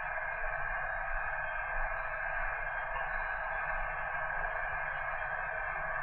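Steady, narrow, radio-like static hiss with a low rumble beneath it, used as the noise intro of an experimental rock track.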